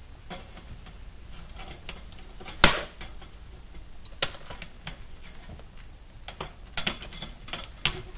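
Scattered sharp clicks and knocks from the flaming Vulcan Safety Chef camp stove as it is handled, with one loud metallic clank about two and a half seconds in and a quick run of clicks near the end.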